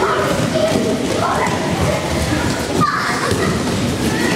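Children's voices echoing in a large gym hall, with dull thuds of bodies landing on judo tatami mats as the children roll and fall.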